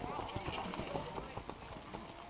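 Hoofbeats of a ridden horse passing close by on the dirt arena, growing fainter as it moves away, with a short laugh at the start and faint voices behind.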